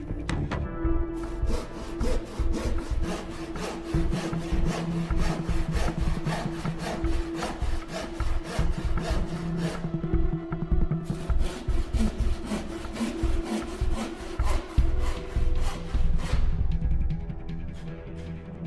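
Hand saw cutting through a glued wooden panel, sawing it to an octagonal shape in rapid, even strokes, with a short pause about ten seconds in.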